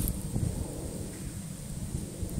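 Wind buffeting the microphone outdoors: an uneven low rumble that is strongest in the first half second, then eases.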